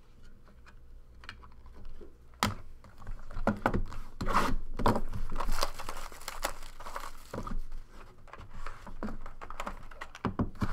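Trading-card pack being opened and the cards handled close to the microphone: crinkling and tearing of the wrapper and cards clicking and rubbing on the table, starting with a sharp click about two and a half seconds in and continuing busily.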